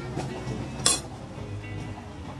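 A single sharp clink of tableware about a second in, over background music.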